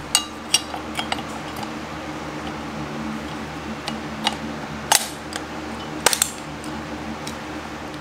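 Scattered metal and plastic clicks and clinks as the blade is changed on a Craftsman cordless oscillating multi-tool: the stock blade comes off and a square Qbit drywall cutter blade is fitted to the tool head. Several sharper clicks come about five and six seconds in, over a steady low hum.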